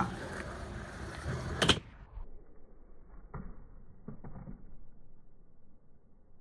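Skateboard on a concrete skatepark: a hiss of rolling wheels ending in a sharp clack of the board about two seconds in, then a few faint, distant knocks.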